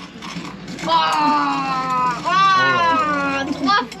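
Speech: a long, drawn-out, wavering voice counting aloud, starting about a second in.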